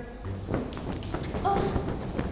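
Irregular thuds and knocks of performers moving on a stage floor, with a short voice sound about one and a half seconds in.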